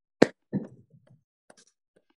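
A single sharp click a fraction of a second in, followed by a short, softer, fading sound and a faint tick near the end.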